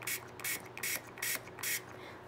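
Pump-mister bottle of Distress spray ink sprayed into a small plastic cup: five quick sprays in a row, a little under half a second apart.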